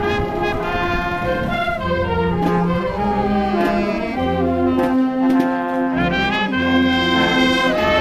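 Wind band playing a tune: flutes and clarinets carry the melody over brass, with a bass line moving about one note a second.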